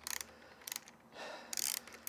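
Socket ratchet wrench clicking in three short bursts as it is swung back and forth, backing out the tight seat-belt retainer bolt on a seat frame.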